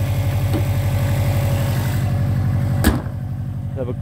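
Subaru Impreza WRX STI turbocharged flat-four engine idling steadily with an even low pulse. About three seconds in, the bonnet is slammed shut with a single sharp bang, after which the engine sounds more muffled.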